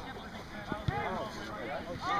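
Several distant voices shouting and calling across an open playing field, overlapping one another, with a single short thump a little under a second in.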